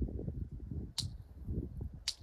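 Wind gusting and buffeting on the microphone, with one short, sharp high-pitched chirp about a second in.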